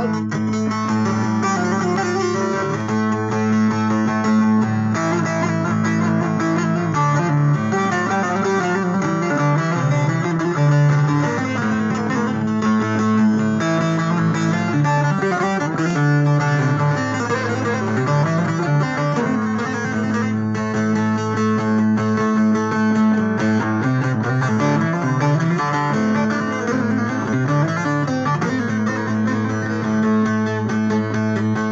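Instrumental passage of a Turkish folk song: a plucked string instrument plays a melody over a steady low drone, with no singing.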